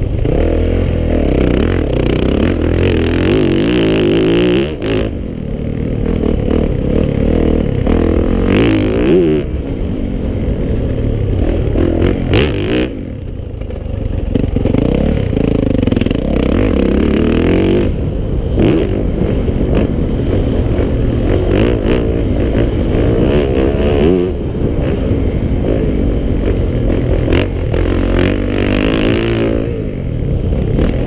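450cc four-stroke motocross bike ridden hard, heard from the rider's helmet camera: the engine revs up and down with the throttle, with brief drops in engine sound about five seconds in and again near thirteen seconds.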